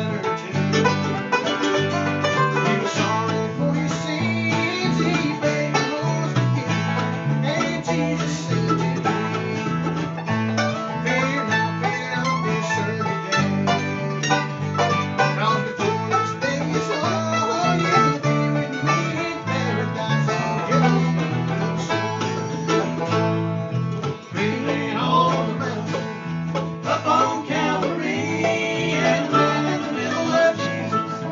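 An acoustic bluegrass band plays an instrumental tune: a five-string banjo and a mandolin picking over a guitar, with an electric bass playing a steady line of notes underneath.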